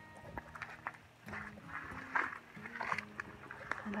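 Footsteps on loose, freshly dug soil, roughly one step a second, with a few small clicks among them.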